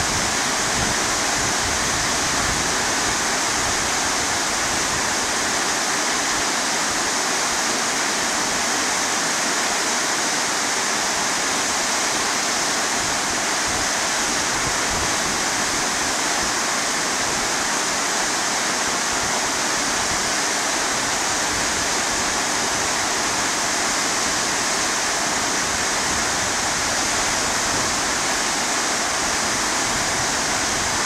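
Waterfall: water pouring and cascading over rocky ledges in a steady, unbroken rush.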